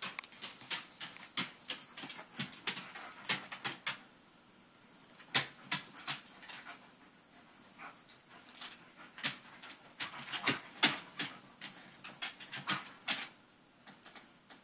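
Corgi puppy at play, making a run of sharp, irregular clicks and taps in clusters, with short lulls about four and eight seconds in.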